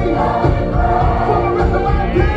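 Gospel worship music: several voices singing together over a full band accompaniment, loud and continuous.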